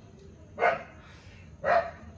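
A pet dog barking twice, about a second apart.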